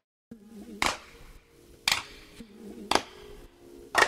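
Background music: a song's opening with steady held chords and a sharp clap-like beat about once a second, starting after a moment of silence.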